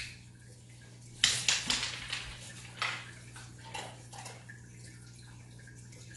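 Rhodesian Ridgeback mix sniffing and snuffling at a wooden floor, nose down, in a few short noisy bursts, the strongest about a second in, over a steady low hum.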